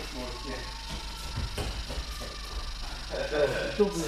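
Speech only: young men's voices talking indistinctly, with a louder voice near the end.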